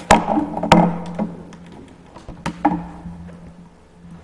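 Handling noise: two sharp knocks close together near the start and a third about two and a half seconds in. A steady low electrical hum runs underneath.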